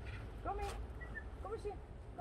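Two short, quiet spoken words from a woman, over a steady low rumble on the microphone.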